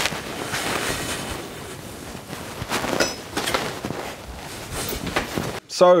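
Handling noise as the mash pot is covered and insulated: rustling with a few knocks.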